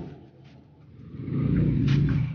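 A motor vehicle's engine rumbling, fading up about a second in and running on steadily.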